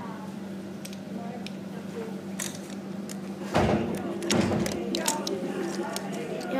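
Lego pieces being handled: scattered small plastic clicks and a louder thump about three and a half seconds in, over a steady low hum, with people talking in the background.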